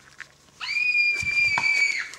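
A long, shrill scream that starts about half a second in, sweeps up fast and then holds one high pitch for about a second and a half.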